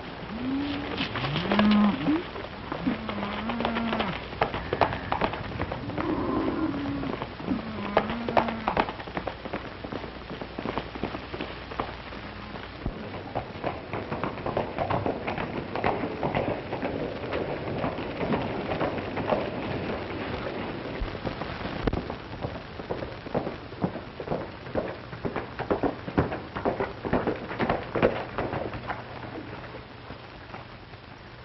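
Cattle lowing over a dense, irregular clatter of hooves. The lowing stops about nine seconds in, and the hoof clatter carries on.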